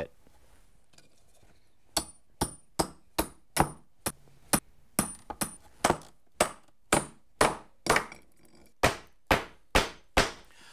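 Hammer driving masonry spring spikes through a 1x3 spruce nailing strip into a drilled concrete wall: a run of about twenty sharp blows, two to three a second, starting about two seconds in, several with a high metallic ring.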